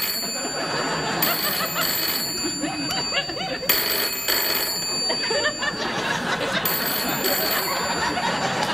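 Telephone ringing in repeated bursts, about four rings with short gaps between them, over laughter.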